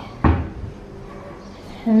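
A kitchen cabinet door shut once with a sharp thud that dies away quickly.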